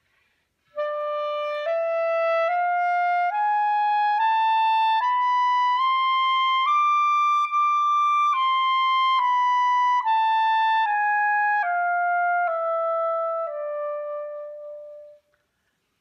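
B-flat clarinet playing the E Mishaberach scale (E, F-sharp, G, A-sharp, B, C-sharp, D, E) slowly in the upper register, one note per beat. It climbs an octave stepwise, holds the top E for two beats, then steps back down to the starting E.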